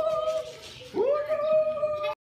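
A long howling cry, heard twice: each slides up in pitch and then holds one steady high note, the second cut off abruptly at the end.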